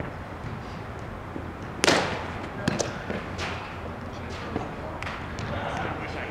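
Spikeball (roundnet) rally: a few sharp smacks of the ball being hit by hand and bouncing off the net, the loudest about two seconds in, with lighter hits after it, echoing in a large indoor hall.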